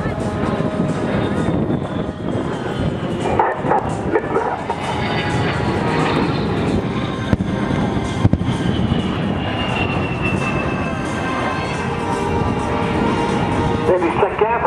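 A-10 Thunderbolt II's twin turbofan engines running loud through a low pass, with a high whine that falls slowly in pitch through the middle. Two sharp blasts from pyrotechnic fireballs on the ground come about seven and eight seconds in.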